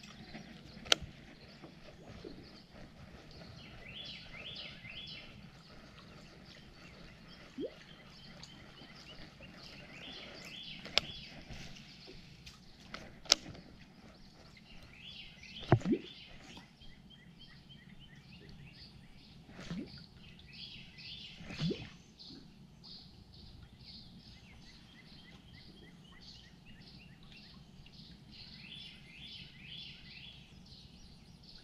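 A songbird singing short repeated phrases every few seconds, with a few sharp clicks and dull pops. The loudest pop comes about halfway through.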